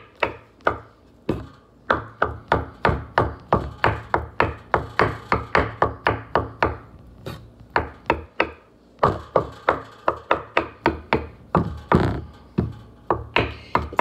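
Chef's knife chopping peeled hard-boiled eggs on a wooden cutting board, the blade knocking on the board in quick, even strokes about three a second.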